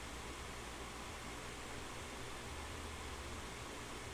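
Steady faint hiss with a low hum underneath, and no distinct events: recording background noise.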